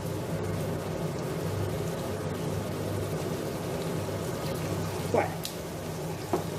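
Chopped vegetables starting to sizzle gently in a stainless steel pot on an induction hob: a steady hiss over a low hum, with a brief sound near the end.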